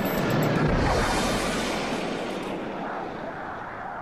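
Jet aircraft engine noise: a broad rushing roar that is strongest in the first second or two, then fades steadily toward the end.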